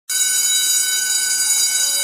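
Intro sound effect: a bright, steady electronic tone with many high overtones that starts abruptly and holds without change.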